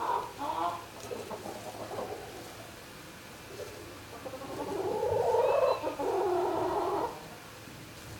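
Chickens vocalizing, with scattered short calls early on and a louder, drawn-out call from about four and a half to seven seconds in.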